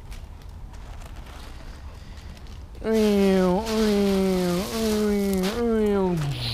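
A dog howling in one long drawn-out call starting about halfway through. It steps up in pitch three times, sinking slowly after each step, and slides down at the end.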